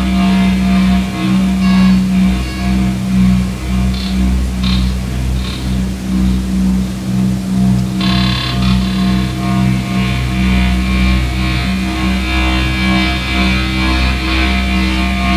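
Live electronic noise music: a loud, pulsing drone on one steady pitch over deep bass, with a harsh, buzzing high layer that thins out early on and cuts back in suddenly about eight seconds in.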